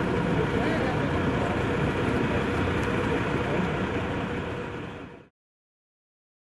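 Fire engine idling with a steady rumble, with indistinct voices over it; the sound fades out about five seconds in.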